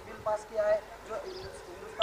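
A voice speaking in short phrases whose words are not clear, with a sharp click at the very end.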